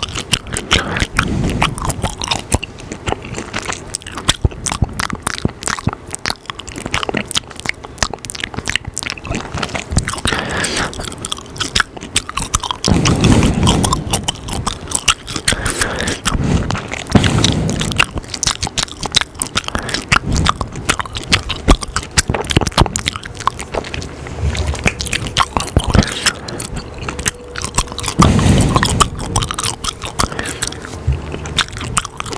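Gum chewing right up against a microphone: a continuous run of wet mouth smacks and clicks.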